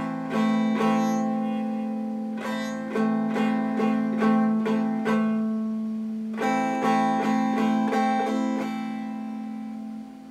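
Electric guitar played at practice: three runs of quickly picked single notes, each left to ring and fade, over a low note that keeps sounding underneath.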